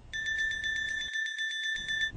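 Electronic bell ringing rapidly and steadily, a game-show style 'winner' sound effect signalling a win on the meter.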